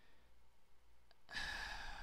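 Near silence, then a man's audible breath, a sigh-like rush of air, starting a little past halfway in.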